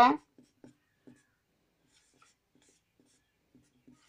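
Marker pen writing on a whiteboard: faint, short scratching strokes, clustered in the first second and again near the end, after the tail of a spoken word at the very start.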